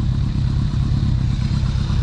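A 2001 Kawasaki ZRX1200R's inline-four engine idling steadily.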